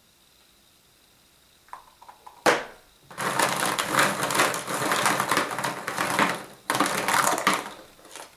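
Hollow plastic eggs clattering and knocking against each other and the plastic bowl as a hand rummages through a bowlful of them. A few light clicks and one sharp click come first; the dense clatter starts about three seconds in and runs, with one short break, until near the end.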